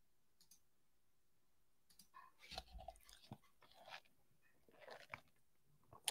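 Near silence, with a few faint short clicks and soft noises between about two and five seconds in.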